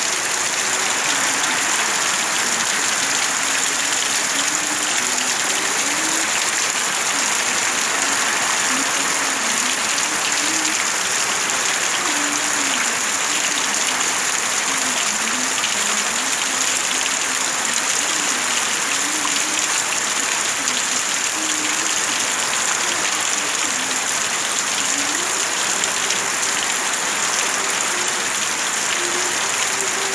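Heavy rain falling steadily, a dense, even hiss of rain on surfaces, with a faint wavering tone underneath.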